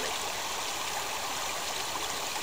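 Shallow woodland stream running over stones: a steady rush of water.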